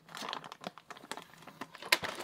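Clear plastic parts bag crinkling and rustling as hands handle and open it, with scattered small clicks and a sharper click near the end.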